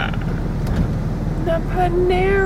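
Steady low rumble of a car's engine and running gear heard from inside the cabin, with a brief bit of voice near the end.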